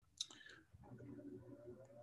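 Near silence with one short, sharp click about a fifth of a second in.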